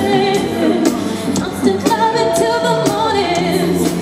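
Live pop song performance: a female lead vocal singing over the band and backing track, with one note held for about a second near the middle.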